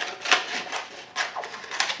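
Scissors snipping through the edge of a dried, hardened papier-mâché shell: several irregular, crisp cuts of stiff layered newspaper.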